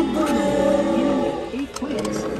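Music playing with an animal-like roar over it, a dinosaur roar sound effect.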